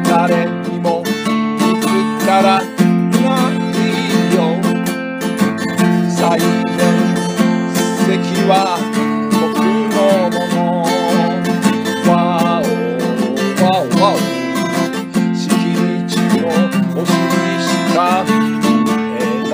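Song accompanied by strummed acoustic guitar chords, with a wavering melody line running above the chords.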